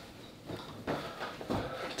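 Soft cloth rustling of a towel being handled, with a few faint knocks or steps.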